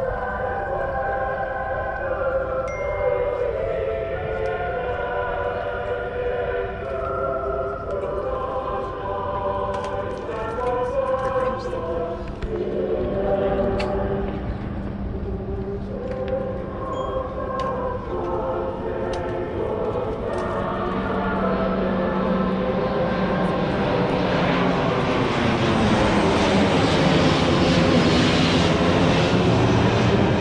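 A voice singing slow, long-held notes. Then, from about two-thirds of the way in, a formation of aircraft flies over low, its noise swelling steadily louder with a sweeping, wavering quality to the end.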